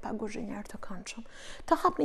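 A woman speaking, her voice a little lower than the talk around it.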